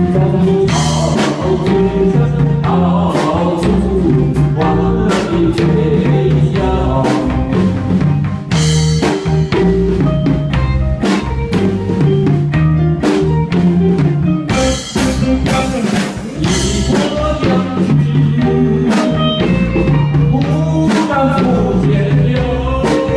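Live band music through a PA, keyboards over a steady drum beat, with a man singing a song through a handheld microphone.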